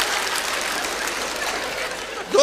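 Audience applause after a punchline, a dense even clatter of clapping that thins out and fades toward the end.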